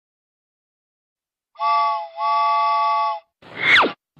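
Silence for about a second and a half, then a cartoon train whistle sounds twice, a short toot and then a longer one, its three-note chord held steady. Just before the end a quick whoosh sweeps down in pitch.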